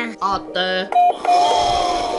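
Robot vacuum chiming as its lit top button is pressed: a short electronic beep about a second in, then a longer held tone.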